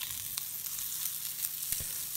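Pre-cooked potato wedges sizzling steadily in olive oil in a frying pan, with a few faint clicks as pieces are turned over by hand.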